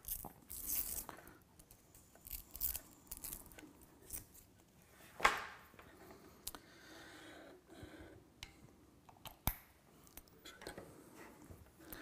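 Handling noise of an XLR microphone cable and its connectors: scattered rustles and light clicks, with a sharper click about five seconds in and another about nine and a half seconds in.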